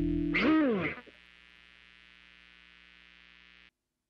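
The band's final held chord dies away. About half a second in, an effected electric guitar note is bent up and back down, fading out within a second. A faint steady hum remains and then cuts off abruptly near the end.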